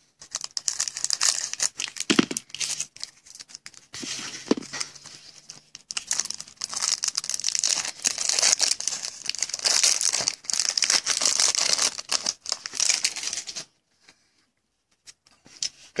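Clear plastic shrink-wrap on a trading-card box being torn open and peeled off, a dense crinkling and crackling that stops about three seconds before the end.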